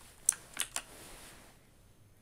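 Three quick computer keyboard key presses in the first second: the Ctrl+V shortcut being typed to paste an image.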